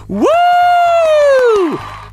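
A drawn-out "woo!" whoop from one voice, a single long call held for about a second and a half, its pitch sliding down as it ends.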